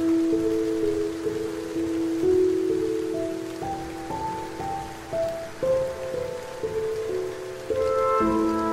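Steady rain falling, with a slow instrumental melody of held notes played over it.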